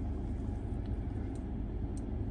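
Steady low rumble inside a car cabin with the car switched on and the climate control running, with a faint click about halfway through and another near the end as the infotainment menu is operated.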